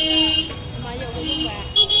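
Vehicle horns honking on a busy market street: one steady horn note stops about half a second in and another begins near the end, with passers-by's voices between.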